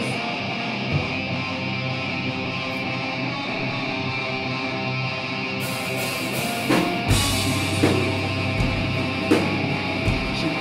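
Live heavy rock band playing through a club PA: distorted electric guitar chords ring out for about five seconds, then cymbals come in and the drums and bass crash back in with heavy low hits.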